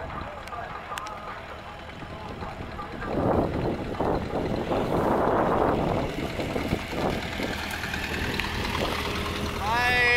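A small Chevrolet Spark hatchback drives slowly up toward the microphone, its engine running with a steady low hum that sets in as it pulls alongside. A louder stretch of rushing noise with irregular knocks comes about three to six seconds in.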